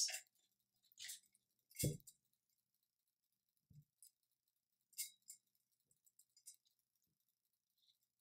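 Near silence broken by a few faint handling sounds from a metal skinny tumbler being held and turned: light clicks and knocks, the loudest a soft thump about two seconds in.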